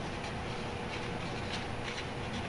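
Steady background noise with a faint steady hum, and a few light scratches of a marker writing on a paper strip.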